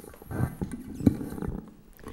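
Handling noise close to a microphone: irregular rustling and light knocks, the sharpest knock about a second in.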